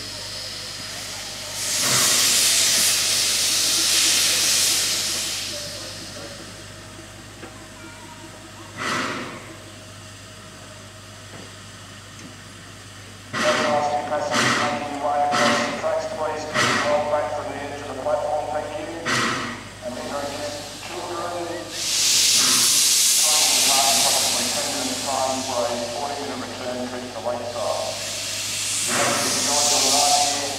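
Narrow-gauge NGG16 Garratt steam locomotive letting off loud bursts of hissing steam, a few seconds each, near the start and again in the last third. In the middle, voices and a series of sharp short beats are heard.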